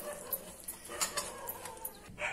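Faint hand-mixing of spice paste and salt in a stainless-steel bowl, with a few light clicks against the steel.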